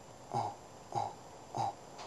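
A man's voice making three short "uh" grunts, evenly spaced about 0.6 seconds apart.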